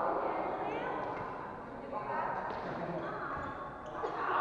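Badminton rally: a few sharp racket strikes on the shuttlecock, over the chatter of onlookers' voices in a large hall.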